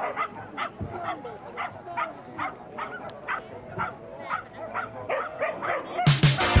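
Pumi barking over and over in high, sharp yips, about three a second, the excited barking of a herding dog waiting to run.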